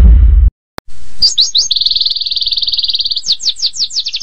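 A deep boom that cuts off about half a second in, then, after a short gap and a click, a songbird singing: a few quick downward-slurred whistles, a rapid high trill lasting about a second and a half, more downward-slurred whistles, and another trill starting near the end.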